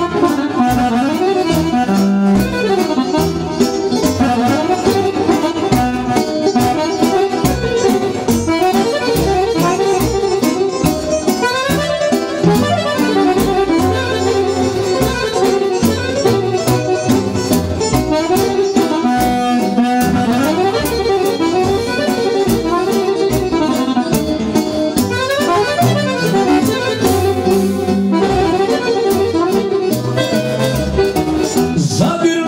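Live band music: an accordion playing a winding melody over electronic keyboards, with a steady drum beat.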